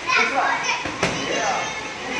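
Children's voices chattering and calling, with one sharp smack of a boxing glove on a focus mitt about halfway through.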